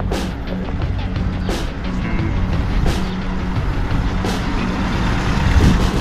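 A small car driving up and passing close by, its engine and tyres getting louder near the end, with background music.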